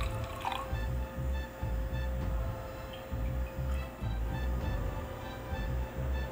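Background music with a soft, steady low beat. Right at the start, coffee is briefly poured from a glass server into a metal mug.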